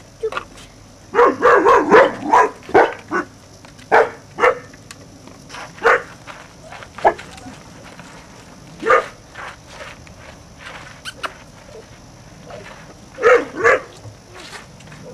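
German shorthaired pointer puppy, about six weeks old, barking in short yaps: a quick run of them about a second in, then single barks every second or two, and another short run near the end.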